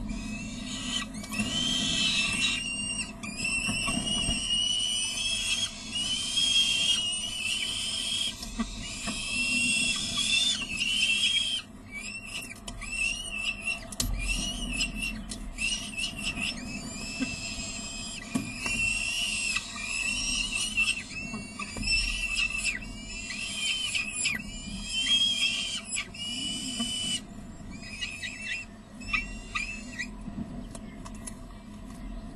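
Peregrine falcon chicks begging at a feeding: a long run of high, wavering, screechy calls about a second each, one after another, with short breaks about twelve seconds in and near the end.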